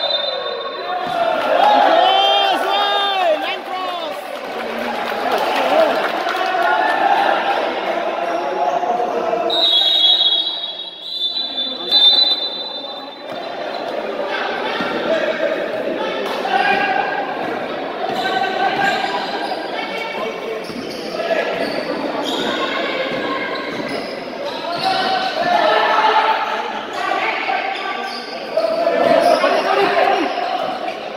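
Indoor basketball game echoing in a large hall: the ball dribbling on the court, sneakers squeaking, and players and spectators shouting throughout. A high steady whistle sounds near the start and again about ten seconds in.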